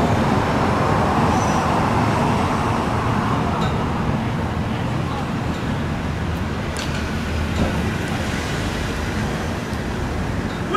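Steady city street traffic noise, a little louder in the first few seconds and then easing slightly.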